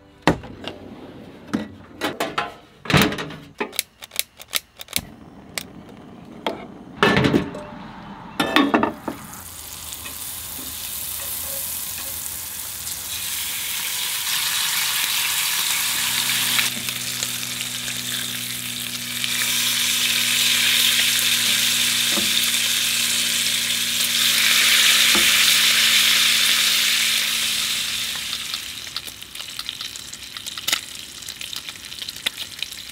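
A run of sharp clicks and knocks in the first nine seconds as the outdoor kitchen compartment is opened and set up. Then bacon frying in a pan on a gas burner: the sizzle builds, grows loud, and fades near the end, with a low steady hum beneath it from about halfway.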